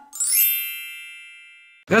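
A sparkling chime sound effect: a quick rising run of bell-like tones that then rings on and fades away over about a second and a half.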